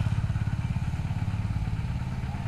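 An engine idling with a rapid, even throb.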